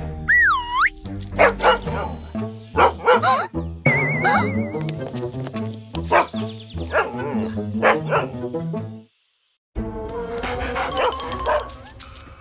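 A cartoon dog barking over bouncy background music, with sliding cartoon sound effects. The sound cuts out completely for a moment about nine seconds in.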